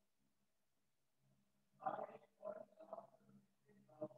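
Near silence, then from about two seconds in a few faint, muffled syllables of a voice too low to make out, over a faint low hum.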